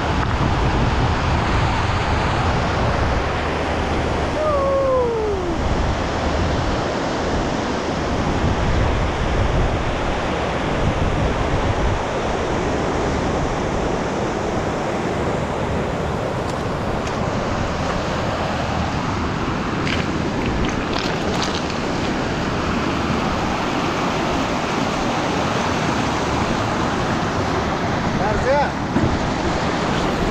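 A fast mountain river rushing over boulders in a rocky gorge, a steady, loud rush of water. About five seconds in, a short falling tone is heard over it.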